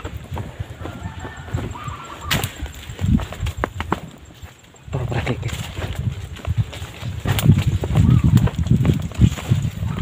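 Wind rumbling on the microphone in gusts, with a brief lull in the middle, mixed with rustling and several sharp clicks or snaps, the loudest about two and a half and seven and a half seconds in.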